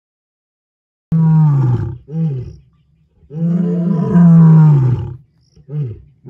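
Male lion roaring. Starting about a second in, four deep calls, each falling in pitch: one loud call, a short one, a long loud one, and a short one near the end.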